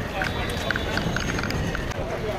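Outdoor street noise with indistinct voices of people talking nearby, mixed with a scatter of short small clicks.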